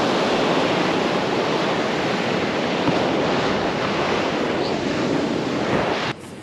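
Ocean surf washing up onto a sandy beach: a steady rush of breaking waves that swells and eases gently.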